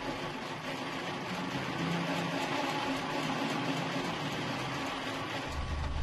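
Hand-cranked metal grain mill grinding roasted cacao beans, a steady grinding noise.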